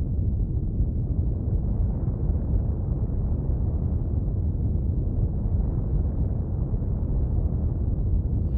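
Steady low rumble from a space-animation sound effect, with no distinct events in it.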